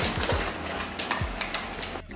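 Handling noise from a handheld camera moved about close to clothing: scattered clicks and rustles. Background music with deep falling bass notes plays under it.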